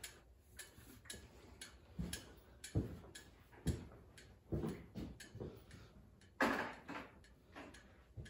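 Irregular knocks and clicks, roughly one a second, with a short scuffing sound a little past the middle, as a chainsaw is lifted off the hook of a hanging crane scale and handled.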